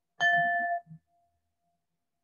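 A single metallic ding: one bright struck tone with several high overtones rings for about half a second, then stops abruptly, leaving only a faint trace of its lowest pitch.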